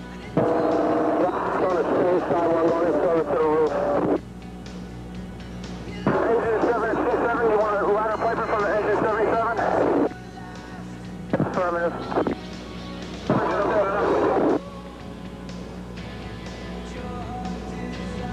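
Bursts of garbled two-way fire radio voice traffic, four transmissions that each cut on and off abruptly, with a steady low hum in the gaps between them.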